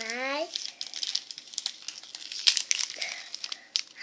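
Crinkling and rustling of plastic and foil candy-kit packets being handled, in a run of short irregular crackles. It opens with a brief rising child's vocal sound.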